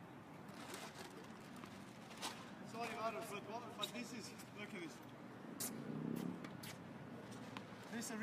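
Tennis balls struck by racquets in a practice rally, a sharp pop every second or two, with people's voices talking faintly in between.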